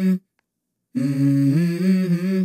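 A man humming into a microphone in short held phrases, each a low note stepping up to a higher one. One phrase ends just after the start, then silence, and a new phrase begins about a second in.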